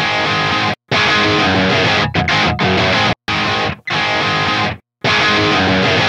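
Electric guitar recording played back in several short stretches that cut off abruptly, switching between two separately recorded takes panned hard left and right and a single take copied to both sides. The copied single take sounds centred, not wide.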